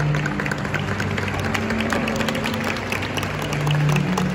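Cello playing slow, long-held low notes, with scattered applause and clapping from the crowd.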